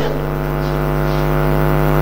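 Steady electrical mains hum from the sound system: a constant low buzz that does not change.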